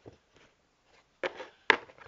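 A few light knocks and handling sounds, then a sharp click near the end, as a metal starfish cookie cutter is picked up and handled.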